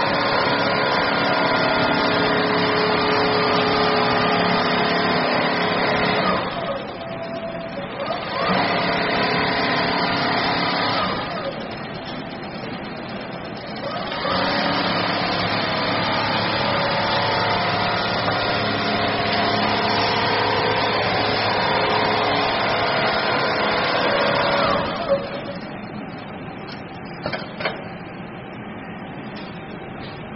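Computerized single-head quilting machine stitching, its motor and needle drive running with a steady whine. It runs in three long stretches, speeding up at the start of each and winding down at the end, with quieter pauses between. After it stops near the end there are a few sharp clicks.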